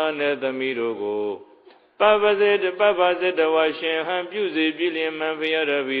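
A Buddhist monk's voice in melodic, chant-like recitation, with one brief pause about a second and a half in.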